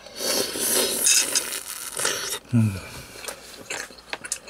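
A person eating a piece of beef from short-rib soup, with loud, wet mouth noises for about two and a half seconds close to the microphone, then an appreciative 'mm'.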